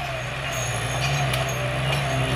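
A large engine running steadily, a low hum with mechanical noise over it, growing slightly louder.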